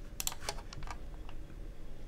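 A quick run of small clicks from a computer mouse and keyboard, about five or six in the first second, then faint room hiss.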